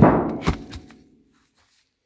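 A heavy knock and a second, sharper knock about half a second later, the first the louder, with a brief ringing that dies away within about a second.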